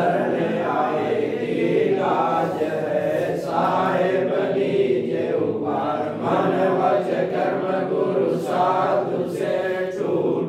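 A group of voices chanting a Sanskrit guru hymn in unison, steady and unbroken, in phrases of a few seconds each.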